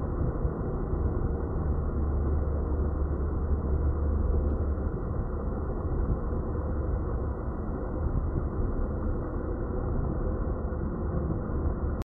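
Small sea waves washing up over a sandy beach: a steady noisy wash of surf, with a deeper rumble swelling for a few seconds in the middle.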